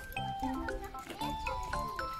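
Background music with a steady beat: bass notes about twice a second under a held, tuneful melody.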